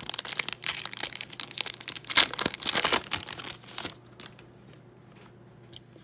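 Foil trading-card pack being torn open and its wrapper crinkled, a dense crackle of quick rustles that stops about four seconds in.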